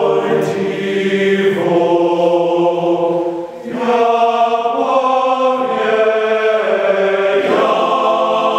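Men's choir singing held chords, the chord changing about every two seconds, with a brief break about three and a half seconds in.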